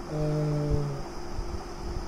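A man's voice holding a flat, steady hum-like hesitation sound for about a second, then breaking off, leaving room tone.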